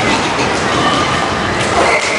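Roller hockey skates rolling over a wooden sports-hall floor: a steady, dense rumbling noise.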